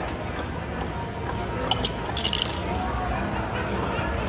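Casino table ambience: a steady murmur of background chatter, with a brief cluster of light clinks about two seconds in.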